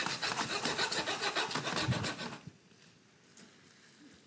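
A spatula scraping and stirring stir-fried chicken around a Wolfgang Puck Plasma Elite 11-inch nonstick wok in quick, repeated strokes. The scraping stops about two and a half seconds in.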